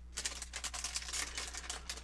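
A LEGO minifigure blind bag crinkling and crackling in the hands as it is opened: a quick, irregular run of sharp crackles.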